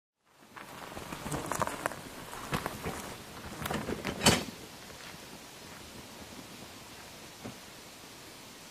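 Footsteps and the wheel of a loaded fishing tackle barrow crunching over a leaf-littered forest path, a run of crackles and snaps that grows to the loudest crack about four seconds in as they pass close, then dies away to a soft outdoor hiss.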